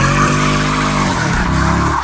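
Dodge Charger SRT8 doing a burnout: the engine runs at high revs while the rear tyres spin and squeal steadily on the pavement. The engine pitch sags in the middle and climbs again near the end.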